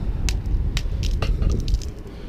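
Footsteps on ice, a sharp crunch or click about every half second, over a steady low rumble.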